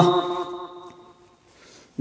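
The end of a man's long chanted note, its echo dying away over about a second and a half into a brief pause.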